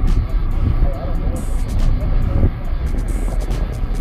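Outdoor crowd ambience: background music with a heavy, steady low rumble and faint distant voices.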